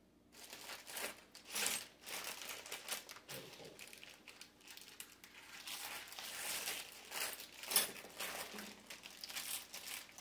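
Plastic hardware packaging crinkling and rustling as it is handled, in irregular bursts with a few sharper crackles.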